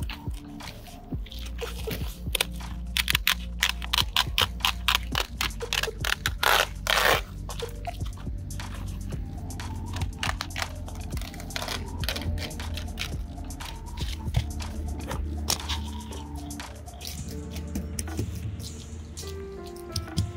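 Tin snips cutting through an asphalt shingle in a quick run of sharp cuts, thickest in the first several seconds and sparser after, over background music with a steady low bass.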